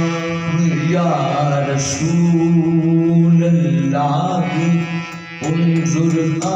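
A man singing long, held devotional phrases over a harmonium's steady drone. The music dips briefly about five seconds in, then comes back.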